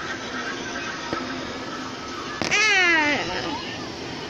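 A single loud meow-like call, pitched and falling, about two and a half seconds in, over steady background noise.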